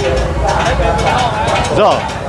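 Chatter of a busy food-market crowd, with people talking close by over a steady low rumble. A man says "So" near the end.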